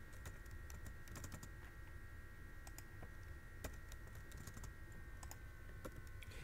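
Faint computer-keyboard typing: scattered, irregular key clicks over a steady faint high-pitched hum.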